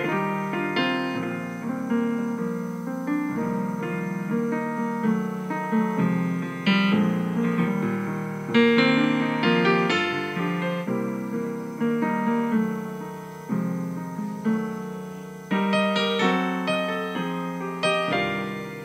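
Solo piano-voice digital keyboard playing a slow instrumental ballad: chords are struck and left to ring and fade, with several louder accented chords in the second half.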